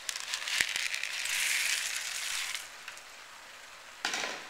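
Black beans tipped out of a plastic colander into a pot of vegetables and tomatoes: a rush of many small clicks as they slide and drop in, lasting about two and a half seconds before it dies away.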